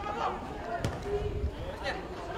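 Players' voices calling out on the pitch, with the sharp thud of a football being kicked a little under a second in.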